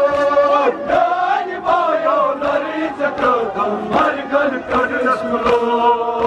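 Men chanting a Kashmiri noha, a mourning lament, amplified through microphones: the lead voices hold long sung notes and the others join in. Short thuds run under the singing; the raised hands and hands on chests fit chest-beating (matam).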